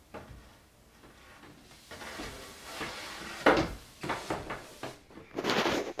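Changing-table shelf panels being handled and fitted into the frame: scraping and knocking, the loudest knock about three and a half seconds in, with more scraping near the end.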